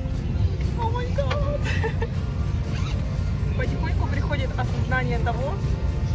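Steady low rumble of an airliner cabin during boarding, with other passengers' voices talking throughout.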